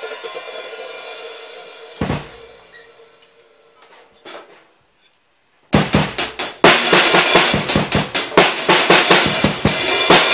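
Acoustic drum kit: a ringing fades away over the first few seconds, broken by a single hit about two seconds in and a short cymbal hit around four seconds. After a second of quiet, a loud, fast beat on bass drum, snare and cymbals starts a little past halfway.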